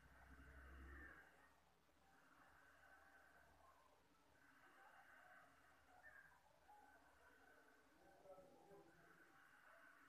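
Near silence: faint room tone in a small room.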